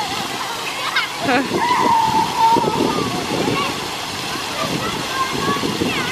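Ground-level fountain jets spraying and splashing steadily, with children's voices and calls over them, one child's call held long about two seconds in.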